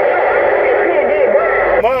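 Uniden Grant XL CB radio's speaker hissing with loud receiver static, a faint voice buried in the noise; the static cuts off abruptly near the end as the radio is keyed to transmit.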